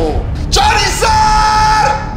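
A man's excited yell, held on one steady pitch for more than a second, over loud background music.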